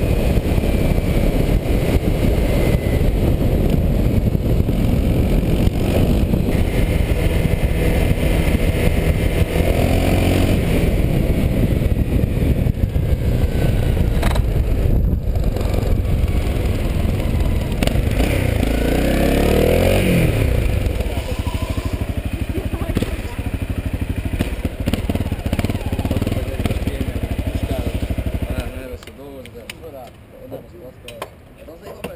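Honda CRF250M's single-cylinder four-stroke engine heard onboard at speed. The revs fall in sweeps around twenty seconds in as it slows, it runs more quietly at low speed after that, and the sound drops away sharply near the end.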